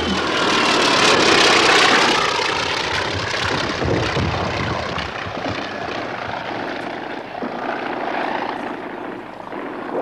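Propeller aircraft's piston engine droning past, loudest about one to two seconds in, then a steady, slightly weaker drone.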